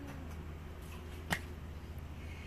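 A single short, sharp click about a second and a half in, over a low steady hum.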